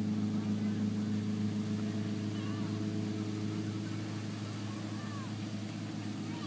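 Steady engine hum at an unchanging pitch, a motor running at constant speed throughout.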